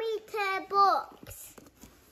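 A young child's high-pitched voice, a few short wordless vocal sounds in the first second, followed by a quieter stretch with a couple of faint clicks.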